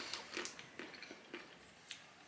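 A person chewing a chocolate-covered raspberry, faint, with a few soft mouth clicks.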